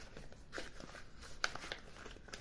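Faint handling noise: soft rustles and a few light clicks, with one sharper click about a second and a half in, from money and a plastic binder being handled.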